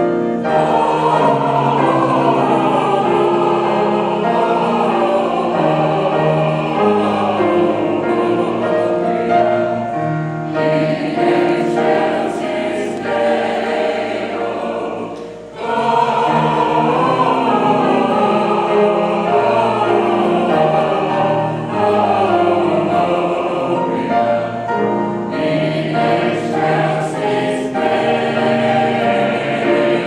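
Senior mixed choir of older men and women singing a Christmas carol arrangement in parts, sustained and continuous, with a brief break about halfway through.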